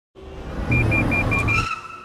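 A car's low rumble as it drives up, with five rapid high beeps of the Toyota Pre-Collision System's warning over it. The rumble stops as the car halts, leaving a short fading high tone.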